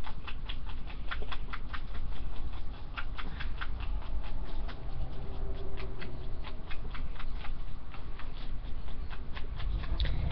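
Clear tape being picked at and peeled off skin, giving an irregular run of small crackles and clicks, several a second.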